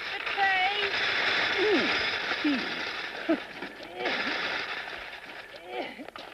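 Short wordless vocal sounds, hums and exclamations, over a steady hiss that drops away about four seconds in.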